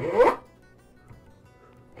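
Veritas 20 tpi fine-cut dovetail saw drawn back once across the end of a wooden board, a short stroke of about half a second near the start with a rising whine. It is one of the light back strokes that cut a starting trough for a dovetail pin kerf.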